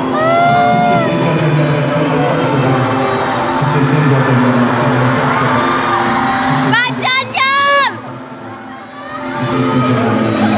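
Live concert sound in a large hall: a male singer with backing music over crowd noise. About seven seconds in come loud, high-pitched screams close to the microphone, then the sound dips briefly.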